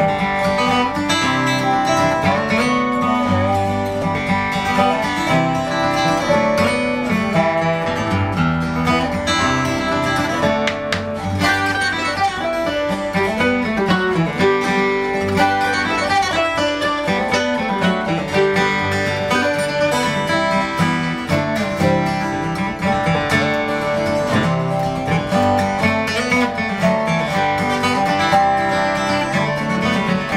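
A small acoustic string band playing an instrumental passage: strummed acoustic guitars with a guitar played flat across the lap, in a folk/bluegrass style, without singing.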